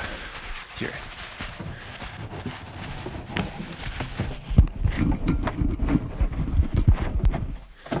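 A cloth microwaveable neck wrap rubbed and pushed over the microphone: fabric rustling with irregular soft thumps against the mic, getting denser and louder about halfway through.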